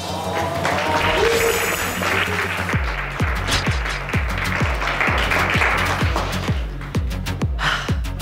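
A group clapping and cheering over edited background music. A steady bass-drum beat comes in about three seconds in.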